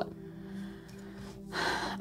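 A woman's audible intake of breath near the end, after a quiet pause with a faint steady low hum.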